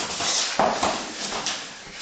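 Two grapplers scuffling on foam mats: bodies and clothing rubbing and shifting, with heavy breathing and grunts, the loudest burst about half a second in.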